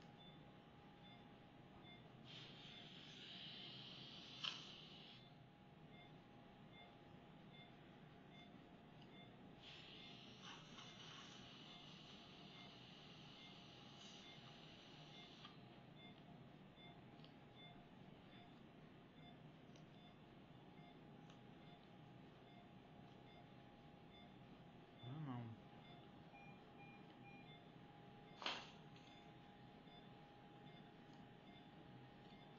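Near silence in a small treatment room: a faint steady hum, two stretches of soft high hiss, and two sharp clicks, one a few seconds in and one near the end. A short low falling sound comes about 25 seconds in.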